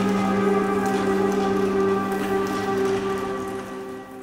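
Experimental contemporary music: a steady, held low drone with overtones over a rain-like rustling texture with scattered light clicks, fading down near the end.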